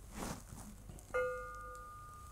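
A steel rolling-bearing ring struck once while being picked up, ringing with a clear metallic tone that fades over about a second; a soft rustle of handling comes just before it.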